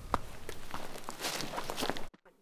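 Footsteps rustling through leaves and undergrowth, with faint scattered crunches.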